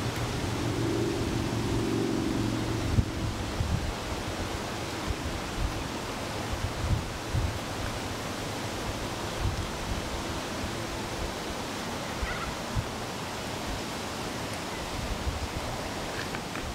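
Steady outdoor noise like wind on the microphone, with a low hum during the first few seconds and scattered soft low thuds after that.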